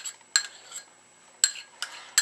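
Metal spoon clinking against a small china bowl while scraping an egg yolk out of it: about four sharp, ringing clinks, unevenly spaced.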